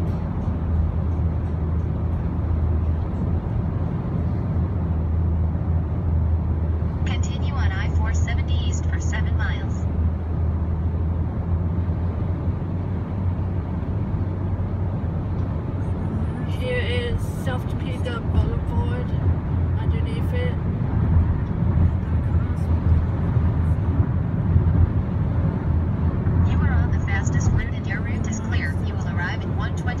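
Steady low rumble of road and engine noise inside a Jeep Compass cabin at highway speed.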